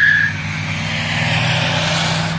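A car's tyres squealing in a skid, cutting off a fraction of a second in, then the car's engine and tyre noise as it speeds close past, with a rush of road noise building near the end.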